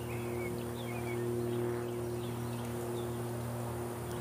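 Birds chirping in short, scattered high calls over a steady low electrical hum.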